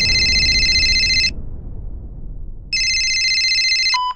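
Telephone ringing twice, each ring a steady, bright trill lasting over a second, over the fading low rumble of the preceding boom. A short click right at the end as the call is answered.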